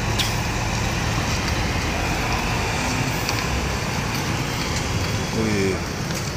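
Diesel engine of a Volvo B11R 450 coach running steadily as the bus drives off, a constant low engine sound. A voice is heard briefly near the end.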